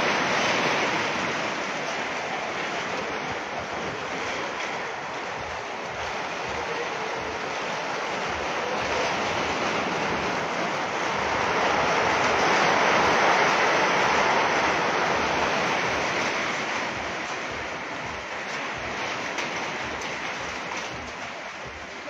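Heavy rain mixed with hail pelting corrugated metal sheet roofs: a dense, steady roar that swells louder about halfway through and eases toward the end.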